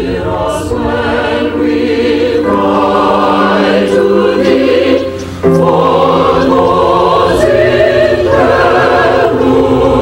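A choir singing in long held chords. The singing briefly dips and comes back abruptly about five seconds in.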